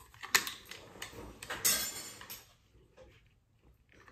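Handling noise from a plastic trail camera turned over in the hands: a sharp plastic click about a third of a second in, a few lighter clicks, then a scraping rustle around the two-second mark.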